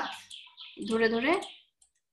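A woman's voice speaking in short phrases; nothing else stands out.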